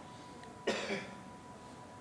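A man clearing his throat once, a short burst under half a second long, a little past the first half-second.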